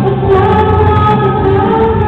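A girl singing a Czech pop song into a handheld microphone over a backing track, holding long notes that move to a new pitch about every half second to second.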